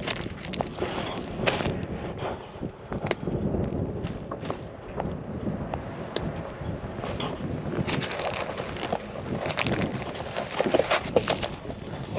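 Wind buffeting the microphone in a 15 to 18 mile-an-hour wind, with scattered rustles and clicks from handling at a snare in dry grass and brush.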